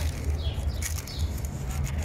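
Small birds chirping, several short falling chirps, over a steady low rumble.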